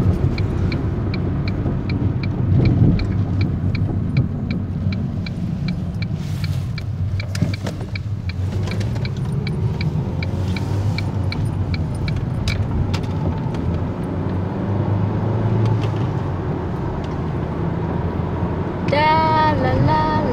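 Steady road noise of a car heard from inside the cabin while driving: a low, even rumble of engine and tyres. A light regular ticking, about two a second, runs through the first half.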